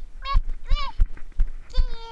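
Three short high-pitched vocal calls, each rising and falling, the last one longer and sliding down, over a regular low thumping about two or three times a second.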